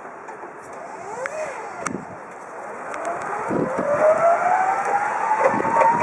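Clark GTX 30 electric forklift's drive motor whining as the truck moves off: a brief up-and-down whine about a second in, then from about three seconds in a louder whine that rises in pitch and levels off as it picks up speed, with scattered clicks.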